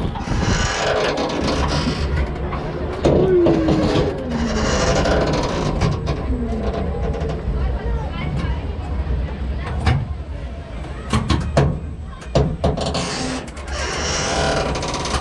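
Wind rushing over the microphone in surges a few seconds apart as the Jungle Loop swing car rides up and down, over a steady low rumble. A few sharp clicks come near the end.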